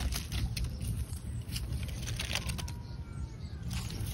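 Dry fallen leaves crackling and rustling as a hand moves through them, a run of small irregular clicks.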